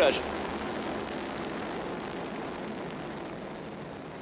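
Ariane 5 rocket at liftoff, its Vulcain main engine and solid rocket boosters heard as a steady rushing roar that slowly fades.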